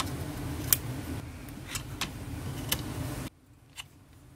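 Sharp metallic clicks, about a second apart, as an AR-15 is broken down by hand and its upper and lower receivers come apart, over a steady low hum that cuts off abruptly near the end.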